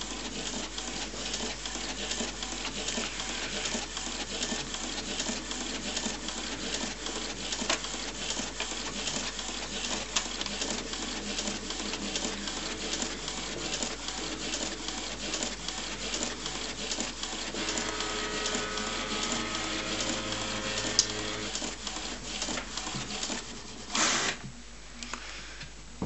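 HP Photosmart C4485 inkjet all-in-one printing a page: the print carriage shuttles with rapid, busy clicking and whirring. About eighteen seconds in, a steady motor whine with several tones runs for a few seconds, and there is a short whirr near the end.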